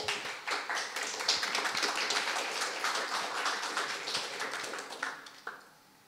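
Audience applauding, a crowd of many hands clapping at once, thinning to a few last claps and dying away about five seconds in.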